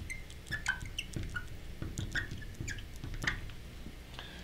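A marker squeaking and tapping on a glass lightboard as a word is written out: a string of short, high squeaks, several each second.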